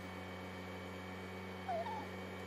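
A dog whimpers once near the end, a short high whine in two quick bent notes, over a steady low hum.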